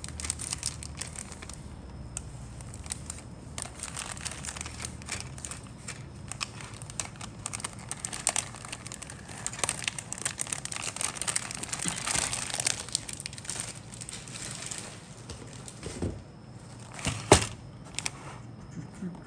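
Clear plastic bag crinkling and crackling irregularly as a bagged plastic model-kit sprue is handled and turned over, busiest around the middle, with a sharp click near the end.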